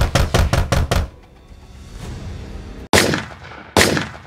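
Rapid, heavy pounding on a door, about six blows a second, the police arriving. Two loud bangs with long fading tails follow near the end.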